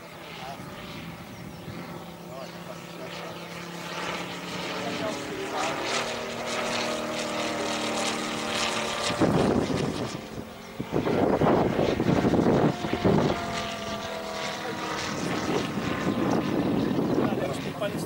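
A 250cc Moki five-cylinder radial engine in a large-scale RC P-47 runs in flight, turning a four-bladed propeller. Its drone grows louder as the plane approaches and is loudest in a swelling rush about halfway through as it passes close, with its pitch shifting.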